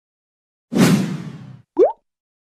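Intro sound effect: a sudden hit that fades out over about a second, then a short, quick upward-sliding blip.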